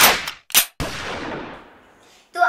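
A loud impact hit as the background music cuts off, with a second short hit about half a second later. A ringing tail then fades out over about a second.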